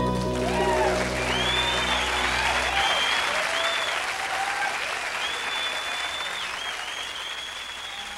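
The last chord of an acoustic guitar and mandolin rings out for about three seconds under an audience's applause. The applause carries high whistles and cheers and fades gradually.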